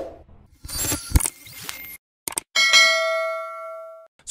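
Logo-intro sound effects: a few swishes and sharp hits, then, about two and a half seconds in, a bright metallic ding that rings on and fades away.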